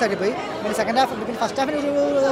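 A man talking, with a crowd chattering in the background.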